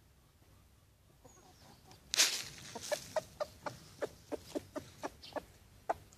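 Rooster's food call to his hens: a loud burst of noise about two seconds in, then a run of about a dozen short clucks, three or four a second. This is the calling a rooster makes on finding something to eat.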